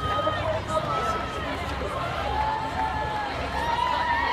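Crowd of race runners and spectators, many voices overlapping in chatter and calls, over the footfalls of a large field of runners on the road.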